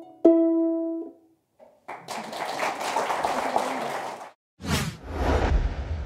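Lever harp: a last plucked chord rings out and fades within about a second. After a short gap comes about two seconds of applause, cut off suddenly, followed by a whoosh sound effect with a low rumble.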